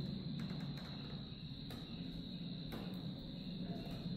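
Steady, high-pitched chorus of insects, like crickets, over a low hum.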